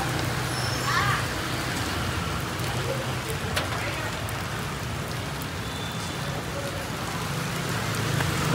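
Steady rain falling on the street, a continuous even hiss; the rain is fairly heavy.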